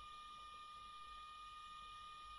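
Near silence: steady faint background hiss with a thin, constant high-pitched electrical whine from the recording chain.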